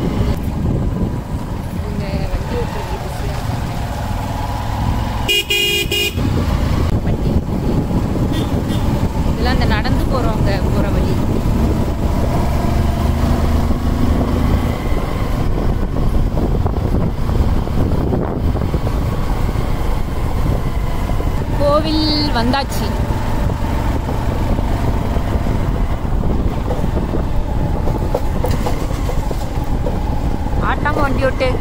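Motorcycle riding uphill, its engine running steadily under heavy wind noise on the microphone. A horn honks once for about a second, about five seconds in.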